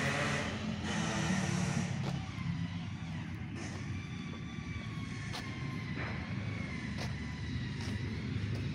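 Steady low rumble of distant engines, with a faint thin whine above it that slowly falls in pitch and a few light clicks.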